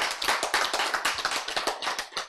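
An audience clapping: a fast, uneven patter of many hand claps.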